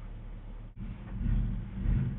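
A low rumble with no voice. It cuts out for an instant just before the middle, then comes back louder through the second half.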